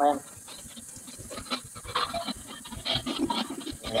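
A short spoken "hi" at the very start, then a lull of faint voice fragments and scattered small clicks over a live video chat's audio, until talking resumes at the end.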